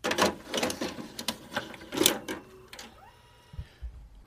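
Mechanical clattering: a quick run of clicks and rattles for about two seconds, then a fainter whir with a short rising tone.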